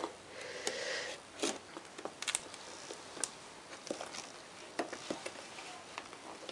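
Scissors cutting through the sealing on a cardboard box: a scraping cut in the first second, then scattered small clicks and rustles of the cardboard being handled.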